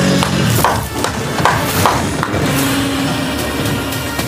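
Film-trailer soundtrack: music punctuated by a run of sharp impact hits over the first couple of seconds, then a held low note.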